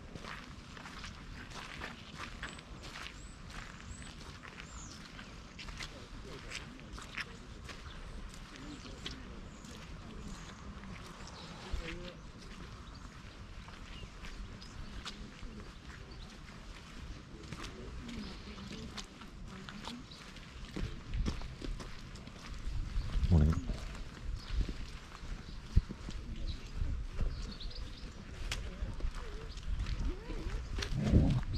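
Footsteps on a muddy earth path, with faint bird chirps. Louder, uneven low sounds join in from about two-thirds of the way through.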